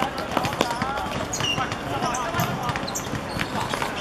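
Players' voices calling across a football pitch, mixed with scattered short thuds from the ball being kicked and players' feet.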